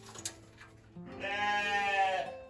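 A sheep bleats once, for about a second, in the second half, over background acoustic guitar music.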